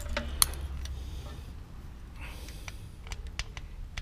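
A few light metallic clicks and scrapes of a screwdriver and feeler gauge on a valve rocker's adjuster screw, as the adjuster is turned down against the gauge to set the exhaust valve clearance, over a low steady hum. The clicks are scattered, with one early and a small cluster near the end.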